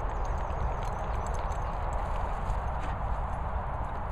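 Wind buffeting the microphone outdoors: a steady, rumbling rush that flickers in loudness, with faint light ticks scattered through it.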